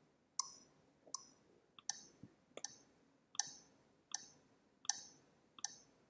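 Faint metronome clicks at a steady beat, about 80 a minute, from the rhythm-training web app during device timing calibration. A softer tap lands close to each click as the beat is tapped along on a mouse pad.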